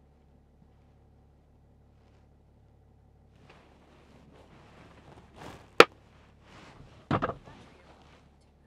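Rustling and sharp plastic clicks from a pair of camera sunglasses being put on. One very sharp click comes about two seconds before the end and a short cluster of knocks follows just over a second later, over the faint low hum of the car's engine idling.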